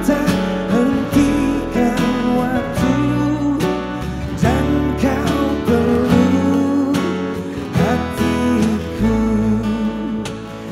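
Live acoustic band performance: a male lead vocalist singing into a handheld microphone over strummed acoustic guitars and keyboard.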